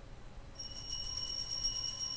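Altar bells (a cluster of small Sanctus bells) shaken in a rapid, bright, high-pitched ringing that starts about half a second in, rung as the priest drinks from the chalice at his communion.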